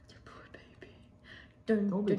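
Quiet, breathy whispering with a few faint clicks, then a voice starts speaking near the end.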